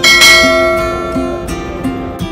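Acoustic guitar background music, with a bright bell chime struck at the start that rings and fades over about a second and a half: the notification-bell sound of an on-screen subscribe animation.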